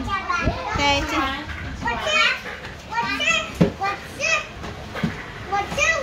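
Young children chattering and calling out in high voices while playing, with a couple of short knocks partway through.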